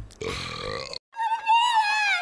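A short, throaty vocal sound from a cartoon character, like a burp or grunt, lasting about a second. After a brief gap, a high-pitched cartoon voice starts speaking.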